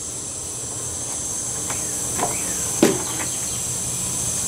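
Wooden hive frames being handled in a wooden hive box: a few light clicks and one sharper knock about three seconds in as a frame is set down. A steady high-pitched drone runs underneath.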